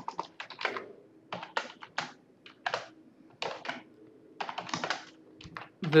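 Typing on a computer keyboard: irregular runs of keystrokes with short pauses between them.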